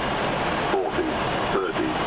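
Indistinct background voices over a steady rushing noise.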